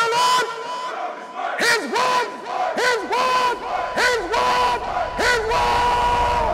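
Voices shouting and chanting together in repeated rising-and-falling calls, held between calls on a steady pitch, as part of an outro soundtrack.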